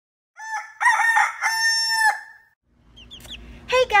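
A rooster crowing once: a call of about two seconds that breaks up at first, then rises into a long held note and trails off.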